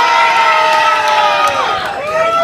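A crowd cheering, with children's voices shouting long, held calls that tail off near the end.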